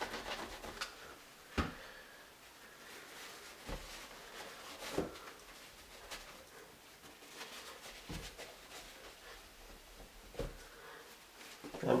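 Faint handling sounds of cleaning chrome shower fixtures with spray cleaner and paper towels: about five short, soft knocks and taps spread out over a quiet background.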